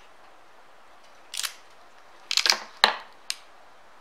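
Close-up handling noises as cotton thread is wound onto an aari needle and glued: a short scrape about a second in, then a quick run of sharp clicks, the loudest just before the three-second mark.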